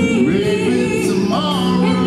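Live pop-soul song: sung vocal lines with sliding notes over amplified musical accompaniment through PA speakers.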